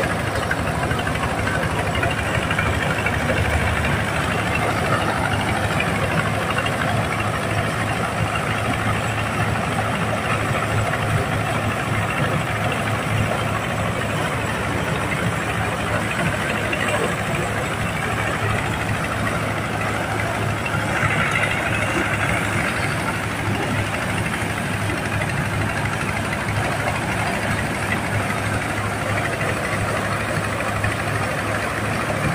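Single-cylinder diesel engine running steadily under load, driving a mobile corn sheller as corn cobs are fed into its hopper and threshed. The machine's noise rises briefly in pitch and loudness about two-thirds of the way through.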